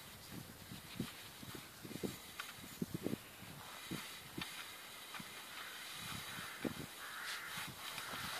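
A wire-haired dachshund on a leash nosing and sniffing through grass, with soft irregular thumps of footsteps and phone handling. A brief rustle of movement through the grass comes about seven seconds in.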